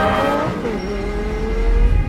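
Lamborghini Aventador's V12 engine sweeping past. Its pitch drops about half a second in, then climbs steadily as it revs up, over a deep low rumble.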